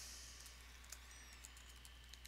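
Faint computer keyboard typing: a few light, scattered key clicks over a low steady hum.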